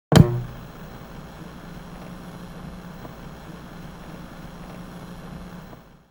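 A sharp thump at the start, then a steady low hum with hiss that cuts off just before the end: the sound effect of an old television set switching on and humming.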